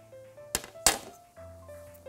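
Metal baking tray set down on a countertop: two sharp knocks about a third of a second apart, the second louder, over soft background music.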